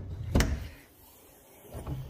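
Lid of an aluminium checker-plate generator box being opened: one sharp clunk about half a second in as it is released, then softer handling noise near the end.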